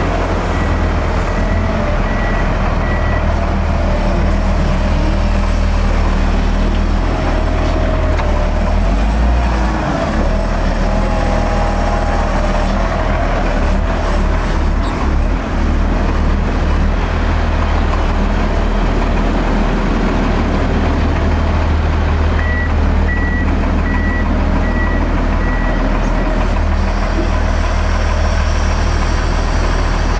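Volvo L120F wheel loader's diesel engine running steadily as the machine drives. Its reversing alarm gives a row of evenly spaced single-pitch beeps for the first few seconds and again about three-quarters of the way through.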